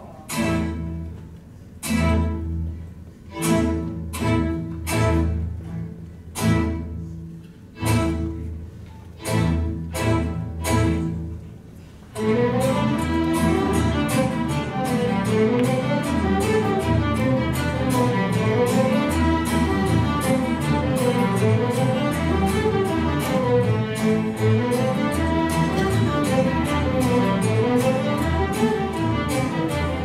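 Youth fiddle ensemble with cellos, double bass and acoustic guitars playing. About ten separate accented chords sound, each dying away. About twelve seconds in, the whole group launches into a fast, continuous fiddle tune.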